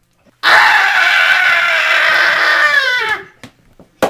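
A child's long, loud scream, held steady for over two seconds, then falling in pitch as it trails off.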